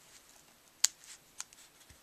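Scissors snipping cotton thread ends at a knot: two short, sharp snips about half a second apart.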